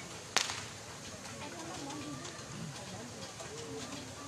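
One sharp whip crack about a third of a second in, the loudest sound here, over faint, distant crowd voices and light ticking.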